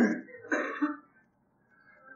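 A man clearing his throat in two short rasps within the first second, then a pause.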